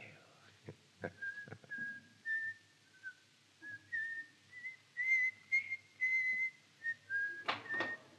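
A man whistling a slow tune, the notes stepping up and down, with a few light knocks in the first couple of seconds.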